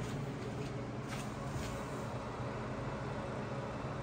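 Steady whir and hum of cooling fans in a rack of running servers and network equipment. There are a couple of faint knocks about a second in.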